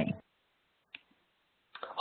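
A single short, sharp click on an otherwise quiet conference-call line.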